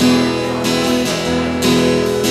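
Acoustic guitar strummed in a steady rhythm, chords ringing between the strokes.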